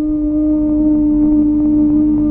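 Background film music: one long held note, steady in pitch, over a low hum.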